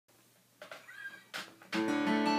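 Acoustic guitar chord strummed once near the end and left ringing, after a second of faint rustling with a short high sliding sound.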